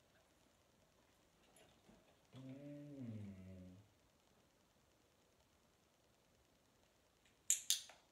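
An Australian Shepherd gives one low, drawn-out vocal sound that falls in pitch, lasting about a second and a half. Two sharp clicks come near the end.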